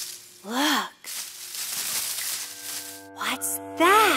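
Children's-song soundtrack: short cartoon voice exclamations, with a rising-then-falling pitch, about half a second in and again near the end. Between them is a noisy hiss, and from about two and a half seconds a held musical chord.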